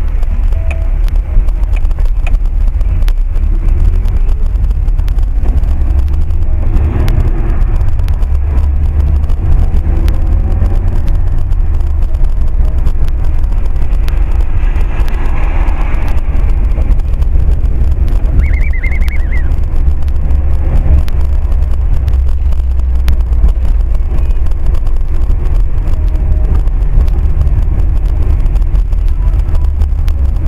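Steady low drone of a car driving, heard from inside the cabin through a dashcam microphone, with road noise on the wet street swelling twice. A brief high warbling sound comes about eighteen seconds in.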